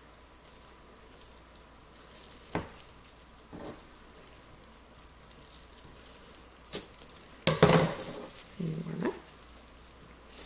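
Small craft scissors snipping off excess yarn: a few short, quiet snips spread over several seconds. Near the end comes a brief murmured voice sound.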